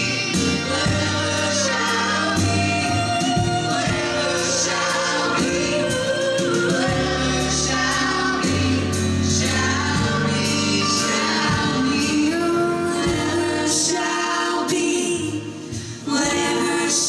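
Live pop ensemble: several voices singing together over piano and a string section of violins and cello. The music drops briefly just before the end.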